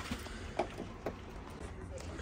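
Low, steady background hum with one short spoken word; no distinct tool or mechanical sound.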